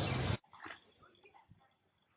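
Loud, dense noise of a magic teleport sound effect that cuts off abruptly just under half a second in. After it comes faint quiet with a few soft sounds and small high chirps.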